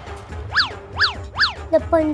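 Cartoon comedy sound effect: three quick boing-like pitch sweeps about half a second apart, each shooting up and dropping straight back down. Near the end a steadier pitched sound begins.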